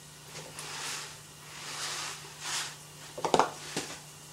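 Dry rice poured from a cardboard box into a pot in a few soft, hissing pours. Two sharp knocks follow a little after three seconds in.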